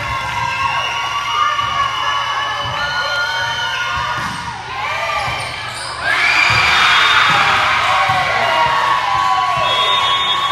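Indoor volleyball rally: ball contacts, shoes squeaking on the hardwood court and players calling out. About six seconds in, a louder burst of cheering and shouting from players and spectators breaks out as the point ends.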